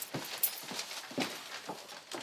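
A few irregular footsteps with light knocks on a hard floor.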